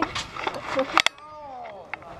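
Voices of people in a group, with a single sharp click about a second in, followed by a quieter stretch.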